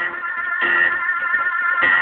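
Loud backing music with guitar, playing on without vocals.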